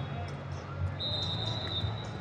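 Large-arena ambience at a wrestling tournament: a steady low hum with distant voices and scattered light thuds. About halfway through, a thin, high, steady tone sounds for about a second.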